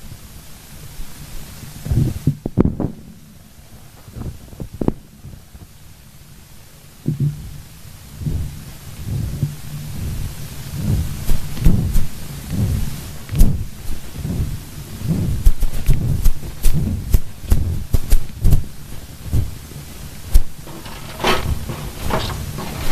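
Irregular low thuds and rustling close to a microphone, sparse at first and then coming about twice a second from around the middle on.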